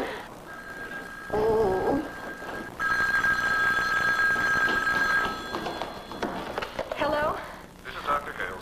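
Telephone ringing twice, a short faint ring and then a louder ring lasting about two and a half seconds: an incoming call.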